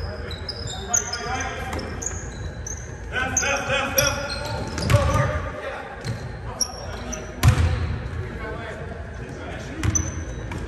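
Basketball game sounds on a hardwood gym floor: a ball bouncing in low thumps, with short high sneaker squeaks and a loud thump about seven and a half seconds in, in a large echoing hall. Players' voices call out in between.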